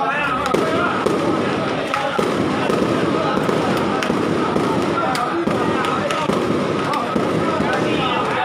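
A long string of firecrackers going off in a dense, continuous crackle that starts about half a second in, with crowd voices underneath.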